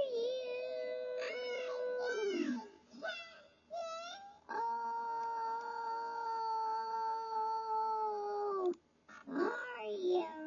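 A high, squeaky cartoon-animal voice singing long held notes. One long note falls away after about two and a half seconds, a few short wavering calls follow, then a second long steady note is held for about four seconds and cuts off suddenly, with the voice starting again near the end.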